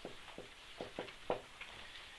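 Marker pen writing on a whiteboard: a handful of short, faint squeaks and taps, one stroke after another, the strongest about a second and a half in.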